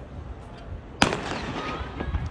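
Starter's gun fired once to start a 100 m sprint: a single sharp crack about a second in that rings on briefly.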